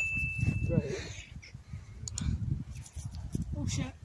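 Indistinct talking and laughter from a group of young men, with one high steady tone lasting about a second at the very start.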